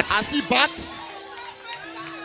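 A spoken word trails off, then faint room sound: a steady held low tone with faint voices in the background.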